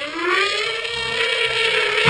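Heavily effect-processed, pitch-shifted voice from a meme's audio: one long drawn-out tone that rises at the start and then holds, buzzy with overtones, and cuts off at the end.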